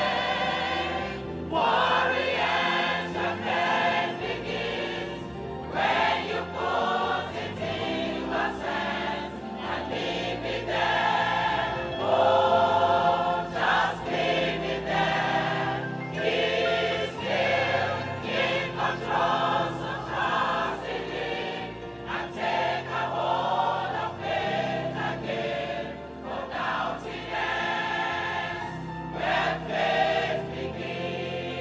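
A choir singing a gospel song over steady instrumental accompaniment.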